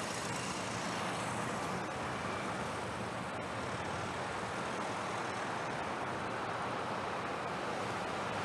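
Motorcade of a limousine and SUVs driving slowly past, a steady hum of engines and tyres on the road.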